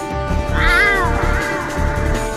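A cat meowing twice, first one long meow that rises and then falls, then a shorter, fainter one, over background music with a steady beat.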